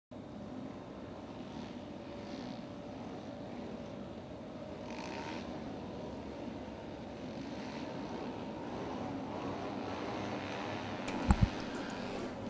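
A field of 70cc mini moto engines running together at a distance as a steady low hum. Two sharp knocks stand out near the end.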